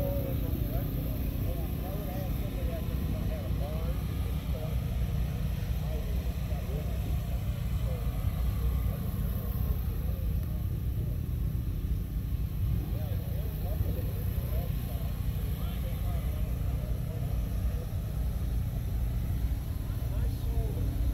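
Background chatter of several people talking at a distance, over a steady low rumble.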